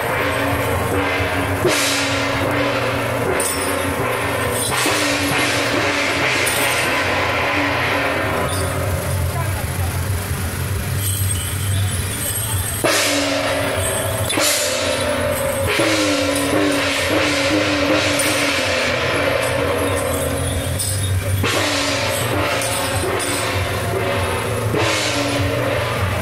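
Temple-procession gong and cymbal playing for a guan jiang shou troupe: crashes with long ringing tails, a few seconds apart and most frequent about 13 to 16 seconds in, over a steady low hum.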